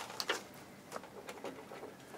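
Faint handling sounds at a fly-tying vise: a few soft ticks and short rustles of tying thread and bobbin being worked behind the cone head.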